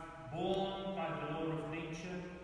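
A priest's voice chanting a liturgical prayer, the words sung on long, steady held notes.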